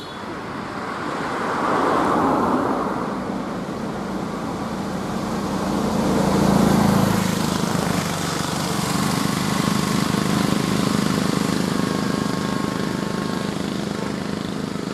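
Road traffic passing on a highway: a car goes by close in the first few seconds, another vehicle's engine and tyres swell loudest about six to seven seconds in, then a steady engine drone runs on as more traffic approaches.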